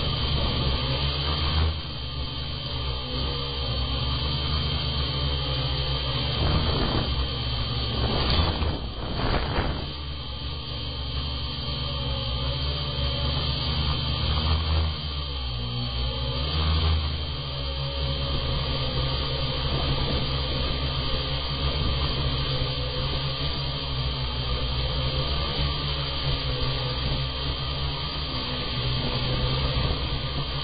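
Hexacopter's brushless outrunner motors and propellers running in flight: a steady hum with a high whine that rises and falls in level as the throttle changes. Wind noise is also on the onboard microphone.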